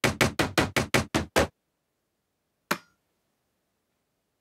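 A quick, uneven run of about seven hard knocks in the first second and a half. Nearly three seconds in comes a single sharp click with a brief metallic ring.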